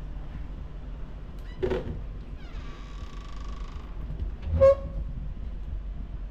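Wooden wardrobe doors being opened: a short creak, then a drawn-out hinge squeal that slides down and holds one pitch for over a second, followed by a sharp knock as the door swings back.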